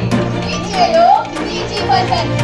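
Young performers' voices over background music, with one voice sliding up and down in pitch about halfway through.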